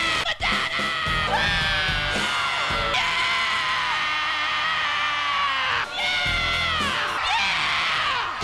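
A woman's voice holds long, high yelled notes that fall away at their ends, over a screaming, cheering audience and music.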